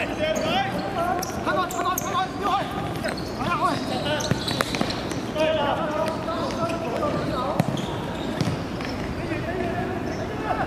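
Players calling and shouting to each other across a hard court during a football game, with sharp knocks of the ball being kicked, the loudest about seven and a half seconds in.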